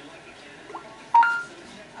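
Samsung Galaxy S4 translator app's voice-input prompt: a short electronic chime of two quick notes stepping up in pitch, about a second in, signalling that the phone's microphone is now listening.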